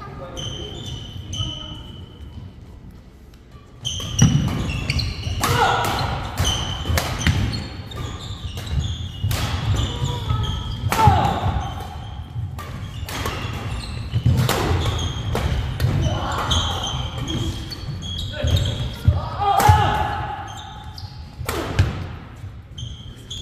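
A fast badminton doubles rally starting about four seconds in: sharp racket strikes on the shuttlecock in quick succession, with shoes squeaking and feet thudding on a wooden court floor. The sounds echo in a large hall.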